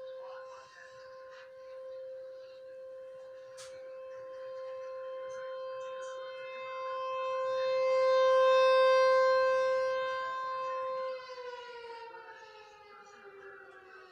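Outdoor tornado warning siren sounding its monthly test: one steady wail that swells louder and fades again, then winds down in a falling pitch about eleven seconds in.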